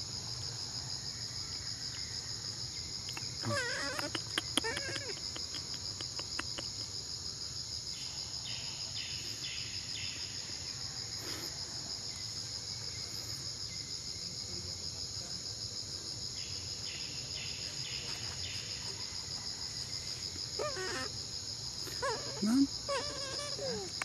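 Steady, high-pitched chorus of insects with a fast, even pulse, from the surrounding forest.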